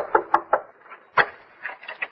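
Several quick knocks on a wooden door, a sound effect in an old radio drama, with another sharp knock just over a second in.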